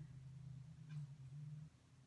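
A woman humming softly with her mouth closed, one low steady 'mmm' that steps up a little in pitch partway through and stops shortly before the end.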